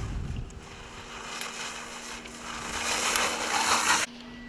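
Skis carving and scraping across snow in a slalom turn, a hiss that grows louder towards the end and cuts off suddenly. Low wind rumble on the microphone at the start.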